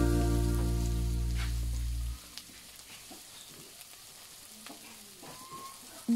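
Background music that cuts off about two seconds in, leaving the faint sizzle of sliced onions and garlic frying in oil in a nonstick pan, with a few light ticks.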